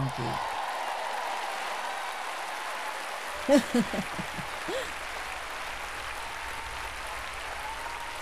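A large audience applauding steadily, a dense even wash of clapping, with a brief laugh from a voice about three and a half seconds in.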